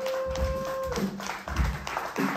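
A band's last held note rings on, then bends down and stops about a second in, amid scattered hand claps and a couple of low thumps.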